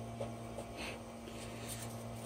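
Low, steady mains hum with a few faint, brief soft clicks and rustles as fingers turn a 3D printer's bed-leveling thumbwheel and slide a sheet of paper under the nozzle.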